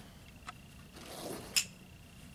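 A marble running through a foam tube and into a PVC coupling fitting: a faint click about half a second in, then a sharper, louder click a little past halfway.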